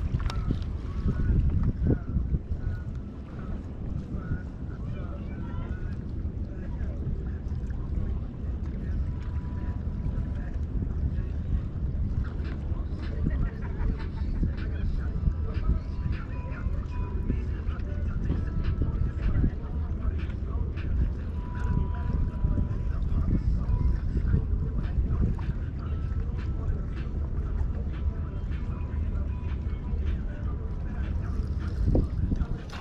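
Wind rumbling on the microphone, a steady low buffeting with scattered faint clicks through it.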